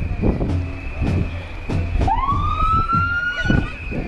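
An emergency vehicle's siren winds up about halfway through, rising quickly in pitch, then climbing slowly and holding for about a second and a half before it stops. Under it runs the steady beat of a marching band's drum.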